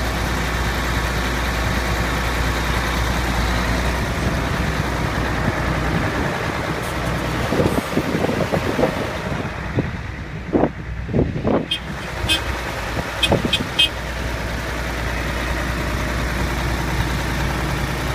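Refuse truck's diesel engine idling steadily. For several seconds in the middle the idle drops away, and a run of irregular thumps and a few sharp clicks takes over.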